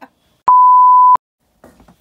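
A single electronic beep at one steady high pitch, about two-thirds of a second long, starting half a second in and cutting off sharply: an edited-in bleep of the censor kind.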